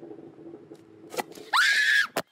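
A person's loud, high-pitched scream that shoots up in pitch and is held for about half a second, starting about a second and a half in. Before it there is only a faint steady hum and a single click.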